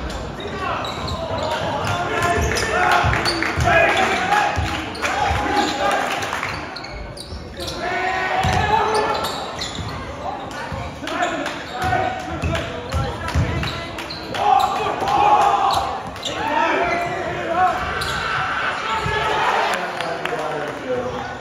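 Basketball game sounds in a gym: a ball bouncing on the hardwood floor during play, over the talking and shouting of spectators in the stands.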